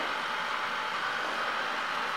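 Proscenic M7 Pro robot vacuum running as it lines itself up at its docking station: a steady, even noise with no clicks or changes.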